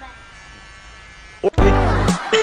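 Electric hair clipper buzzing steadily at a low level. About one and a half seconds in, loud music with a heavy bass beat cuts in suddenly over it.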